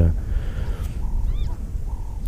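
Low, steady background rumble with one brief, high, arching animal call a little past the middle.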